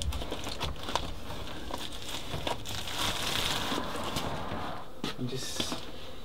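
Foil-faced bubble insulation wrap crinkling and crackling as it is handled and pulled into place around a box.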